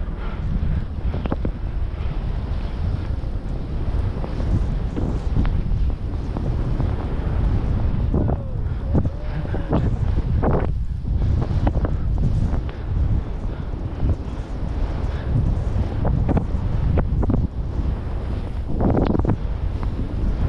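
Wind buffeting a body-mounted action camera's microphone as a skier descends fast through deep powder, with the rushing and swishing of skis cutting through snow. It is a steady, loud rumble broken by irregular short surges.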